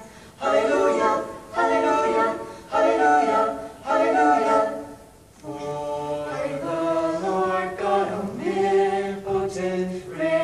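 Unaccompanied mixed group of young women and men singing a song in harmony, a cappella. About four short sung phrases come first, then after a brief break about halfway, lower men's voices join in longer held chords.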